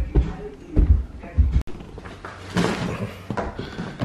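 Handling noise from a zippered canvas duffel bag being picked up and carried: rustling with a few dull knocks at uneven intervals.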